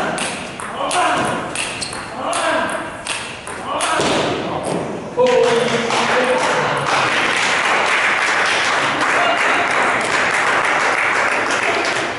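Table tennis balls clicking off paddles and the table, with voices in the background. About five seconds in, a louder steady wash of background noise comes up and stays.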